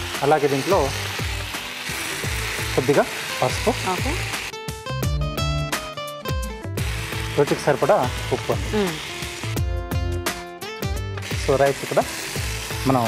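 Rice and lentils frying in a pan over a gas flame: a steady sizzle, with a person talking over it. Background music comes in twice, for a couple of seconds each time.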